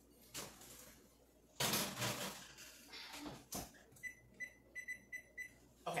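A sheet pan sliding into an electric oven and the oven door knocking shut, then a quick run of about six short electronic beeps from the range's control panel as the ten-minute timer is set.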